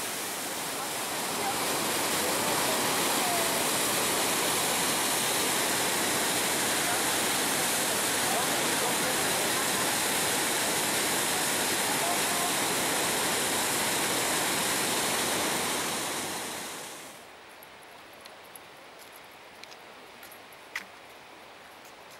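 Glacial meltwater of the Trümmelbach rushing through its rock gorge: a steady wash of water noise that fades out about 17 seconds in, leaving quiet outdoor background with a few faint ticks.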